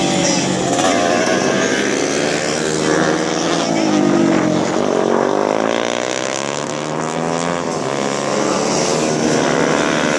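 150 cc race motorcycles running through a corner: engine pitch falls as the riders slow into the bend around the middle and rises again as they accelerate out, with more than one engine heard at once.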